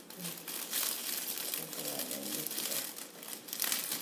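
Clear plastic gift bag crinkling irregularly as it is gathered and bunched closed by hand around a gift basket.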